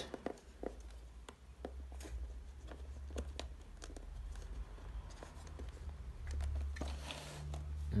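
Faint light clicks and scrapes of fingers pressing thin wires into the grooves of a Dyson cordless vacuum's clear plastic motorised brush head, with a short rustle near the end.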